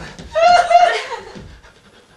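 A person's high-pitched vocal cry, starting about a third of a second in and lasting under a second before trailing off.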